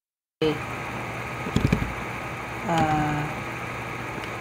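Steady low hum and hiss of microphone background noise after a moment of dead silence at the start, with a man's hesitant 'uh' and a few faint clicks about a second and a half in.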